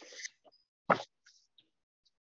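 A soft breath drawn in at the start, then a single short mouth click or lip smack about a second in, otherwise quiet.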